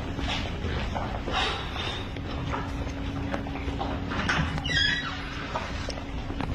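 Footsteps walking across a gym floor, an uneven tread of soft thuds about one a second, over a steady hum. There is a short high squeak near the end.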